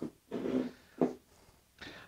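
Three short, faint handling noises from a hand gripping and settling a cordless hammer drill; the drill itself is not running.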